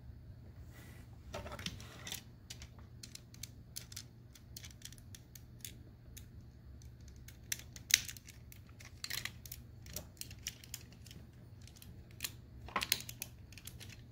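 Small hard-plastic toy parts clicking and rattling as a Transformers Generations Skullgrin action figure and its launcher accessory are handled and snapped together. Scattered light clicks, with a sharper click about eight seconds in and a quick run of clicks near the end.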